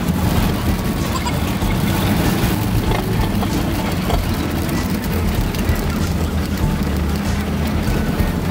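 Shuttle bus engine and road noise heard from inside the bus as it climbs a winding mountain road: a steady low rumble.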